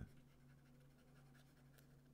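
Faint scratching and tapping of a stylus writing on a tablet, over a low steady hum.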